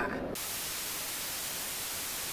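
Steady hiss of TV-style static (white noise), cutting in suddenly about a third of a second in, right after a man's voice ends.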